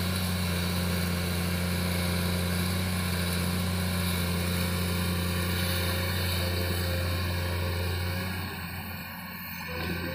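Komatsu PC210 hydraulic excavator's diesel engine running steadily under load as it digs and lifts a full bucket of soil, a low even drone that turns quieter about eight seconds in.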